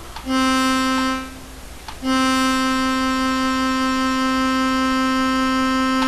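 Sylenth1 software synthesizer playing the same C note twice. The first note lasts about a second; the second is held for about four seconds. Both stay at a steady pitch with no rise.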